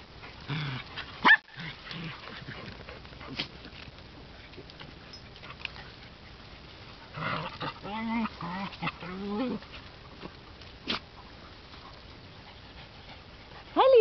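Dogs making sounds while playing together: a sharp, loud yelp about a second in, then a cluster of short whines a little past halfway, and one sharp click near the end.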